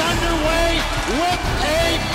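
An excited play-by-play announcer's voice shouting in long, drawn-out calls over background music.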